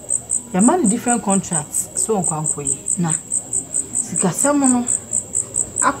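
Cricket chirping steadily, a high, even pulse of about five chirps a second, behind people speaking.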